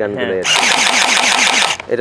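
Electric toy gel blaster rifle firing a full-auto burst: its motor and gearbox give a rapid, even rattle of about ten shots a second for just over a second, stopping abruptly near the end.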